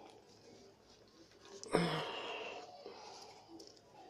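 One sudden, sharp exhale of effort, like a sigh, under a second long, a little before halfway, while a rubber gas tube is being forced onto a regulator nozzle; faint handling sounds otherwise.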